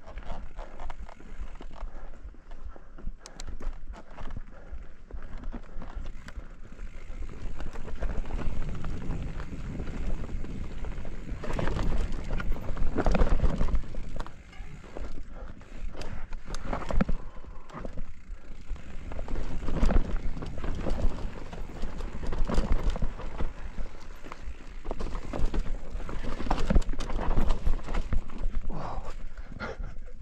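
Mountain bike riding down a forest singletrack: tyres rolling over dirt, roots and rocks with frequent knocks and rattles from the bike. The sound grows louder and rougher about eight seconds in as the trail gets rocky.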